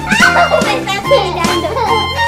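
Children laughing over background music with a steady, repeating bass line.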